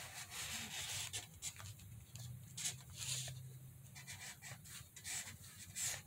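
Felt-tip marker rubbing back and forth on paper as a patch is coloured in solid green: faint, irregular scratchy strokes.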